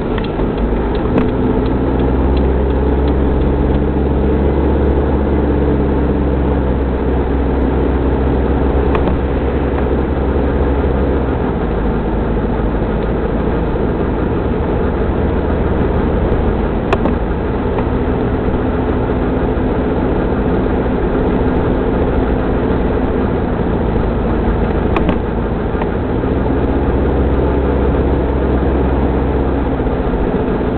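Mitsubishi Pajero 4x4 driving, heard from inside the cabin: a steady engine note whose pitch drifts gently up and down with speed, over continuous road noise. The engine note drops back for several seconds in the middle, and a few sharp clicks sound about every eight seconds.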